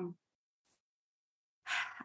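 A spoken word trailing off, then a pause of dead silence, then a short, soft in-breath near the end as the next speaker gets ready to talk.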